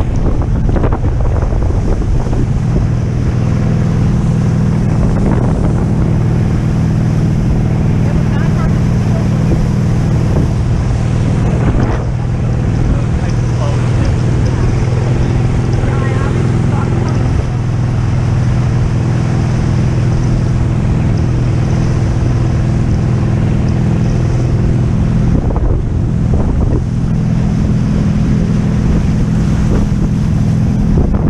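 Towing speedboat's engine running at a steady, even pitch, under the rush of wake spray and water around an inflatable banana boat, with wind buffeting the microphone.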